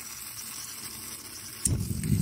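Coleman 533 dual-fuel camping stove with its fuel valve open, hissing steadily. About one and a half seconds in, the burner lights suddenly and goes on with a low, steady rushing rumble as the flame takes hold.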